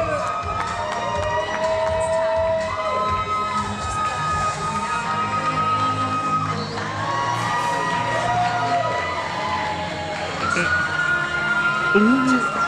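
Audience cheering and shouting, with many long overlapping whoops and yells, over music playing underneath.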